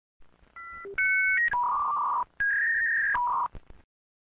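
Electronic beeping sound effect: a quick string of steady beeps stepping between pitches, some sounding two tones at once like telephone keypad tones, then two longer beeps of under a second each and a short final one, with faint clicks between them.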